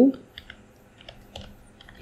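Computer keyboard keystrokes: a few light, irregularly spaced key presses as a word is typed.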